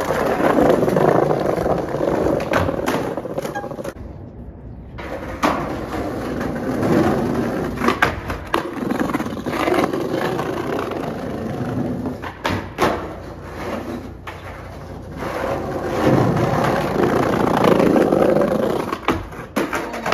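Skateboard wheels rolling over brick pavers with a rough, changing rumble, broken by several sharp clacks and knocks of the board.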